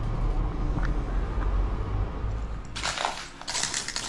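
Low rumble, then, near the end, loud crunching and clinking of broken debris and glass underfoot as someone walks over rubble in a bomb-damaged building.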